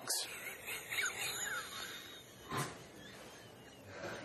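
A woman's stifled, breathy laughter behind a hand, with faint high wavering squeaks, and a sharp breath about two and a half seconds in.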